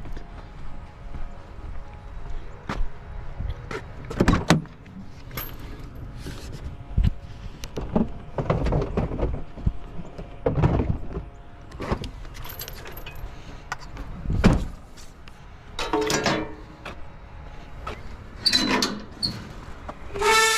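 Irregular knocks and metallic clanks as a utility trailer's steel mesh ramp gate is handled, with a few short squeaks near the end.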